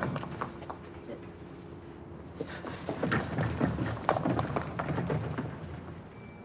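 Footsteps on paving stones at a walking pace, starting about two and a half seconds in and fading near the end.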